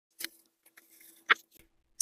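Clear plastic carrier sheet of glitter heat transfer vinyl crinkling as it is slowly peeled off a t-shirt: a few soft crackles, the sharpest just past a second in.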